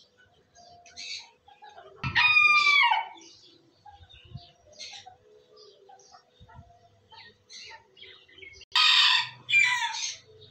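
A chicken gives a loud call about a second long, its pitch dropping at the end, about two seconds in, then a harsher call and a second falling call near the end. Faint short chirps of small birds sound on and off throughout.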